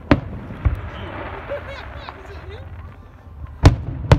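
Aerial firework shells bursting: a sharp bang just after the start, a smaller one under a second in, and the loudest bang near the end, with a hiss between them.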